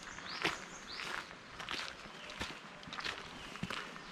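Footsteps walking at a steady pace on a dirt path scattered with dry leaves, each step a short crunch, roughly two a second.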